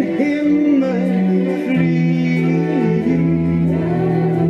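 Live band music through a PA system, with sung voices holding long notes over the accompaniment.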